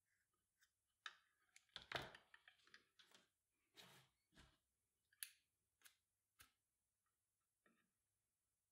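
Faint snips and clicks of scissors trimming the ends of 550 paracord. Several short cuts and handling clicks, the loudest cluster about two seconds in.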